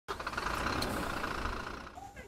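A vehicle engine running steadily with a low rumble, fading out near the end.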